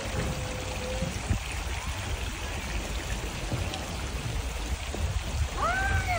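Water running steadily into a pond, heard over a low rumble of wind on the microphone.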